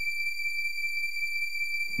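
A steady high-pitched electronic tone held at one pitch, with the tail of a low bass note dying away at the start.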